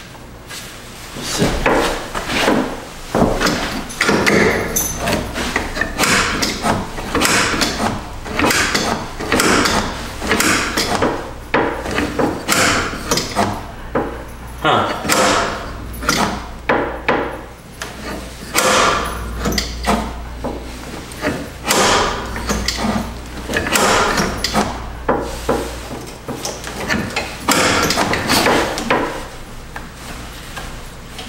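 Hands working on the metal engine parts around an old golf cart's air filter and carburetor: irregular knocks, clanks and scrapes, many in quick succession.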